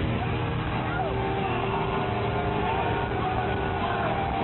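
Rock-concert crowd shouting and cheering close by, the voices swooping up and down over a dense, muffled din from the arena.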